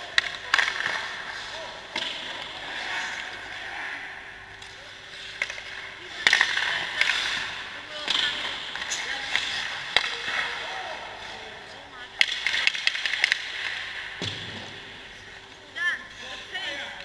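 Ice hockey skate blades scraping and carving on rink ice, with longer scraping bursts of skaters stopping about six and twelve seconds in. Sharp knocks of sticks and pucks are scattered through it.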